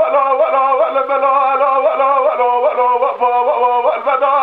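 A male dengbêj singer singing unaccompanied in Kurdish. He holds long notes with a wavering vibrato and ornamented turns and steps between pitches. The recording is narrow-band and dull-sounding, like an old archive tape.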